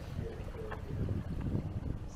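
Wind buffeting the microphone of an outdoor field recording: a low, uneven rumble.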